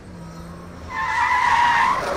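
Car tyres squealing as a car brakes hard, starting about a second in over a low engine hum, and turning into a loud skidding rush at the end.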